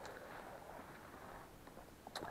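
Faint footsteps and rustling of a person walking slowly over the forest floor, very quiet overall.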